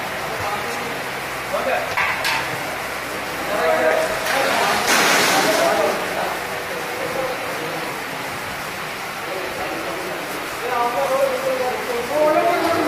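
Fried potato chips sliding and pouring out of a tilted stainless steel dehydrator pan onto a steel tray: a rustling hiss, loudest about five seconds in, over steady background noise. Men talk faintly in the background.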